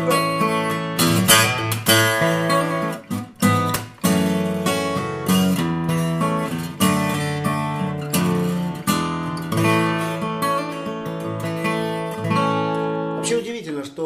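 Folk-bodied acoustic guitar with a spruce top and mahogany back and sides, played fingerstyle: a continuous run of picked notes and chords, full in the bass with a bright, clear midrange. The playing stops about a second before the end.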